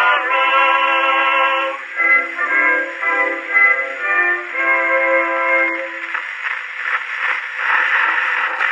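Victor Victrola VI acoustic phonograph playing a 1908 acoustic recording of a male vocal quartet singing a hymn, with a narrow, tinny sound over surface hiss. The singing ends about six seconds in, leaving only the record's scratchy surface noise.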